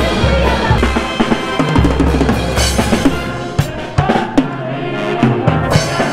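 Live brass band music with bass drum and snare driving the beat under sousaphone bass notes and brass. A little past the middle, the low bass thins out and a few sharp drum hits stand out before the bass line comes back near the end.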